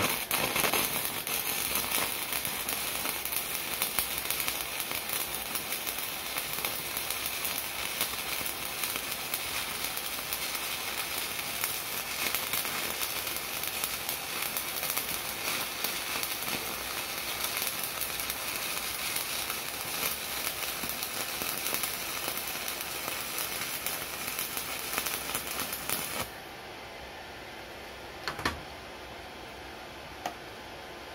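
Stick-welding arc from a 3 mm TMU-21U electrode at 120 A on a vertical joint, powered by a Wert inverter welder with a choke. It burns steadily for about 26 seconds and cuts off suddenly when the arc is broken. One or two light clicks come near the end.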